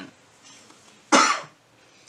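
A man coughs once, a short sharp cough about a second in.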